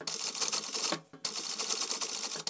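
Industrial straight-stitch sewing machine sewing at speed, a fast rattle of stitches in two runs with a short stop about a second in.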